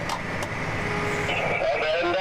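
Steady low hum of a John Deere combine heard from inside its cab, with two sharp clicks in the first half second and a muffled voice in the second half.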